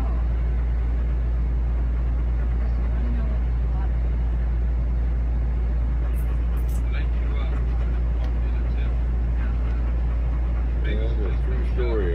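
Steady low rumble filling a motorhome's cabin, with faint voices now and then and clearer talk starting near the end.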